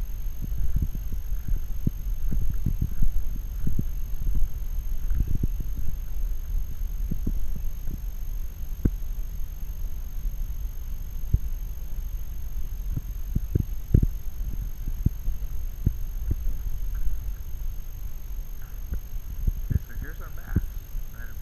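Low, muffled rumble with irregular dull thumps, several a second and uneven in strength: movement and handling noise picked up by a worn action camera as its wearer shifts and steps about on rough ground.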